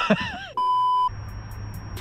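Laughter, then a flat electronic censor bleep about half a second long that cuts off sharply, followed by background music with a fast ticking beat.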